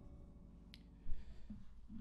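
Acoustic guitar strings ringing faintly and dying away, with a single small click and then a soft knock about a second in.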